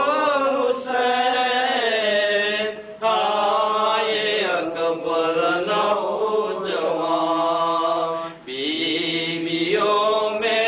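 A man's solo voice chanting a Muharram mourning recitation unaccompanied, in long, drawn-out melodic phrases. It breaks briefly for a breath about three seconds in and again near eight and a half seconds.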